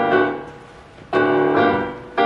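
Piano playing the opening chords of a song: one chord fades over the first second, then a new chord comes in about a second in and is held.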